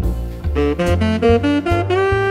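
Instrumental Latin jazz: a lead melody of short, quickly changing notes over bass notes, with light percussive hits.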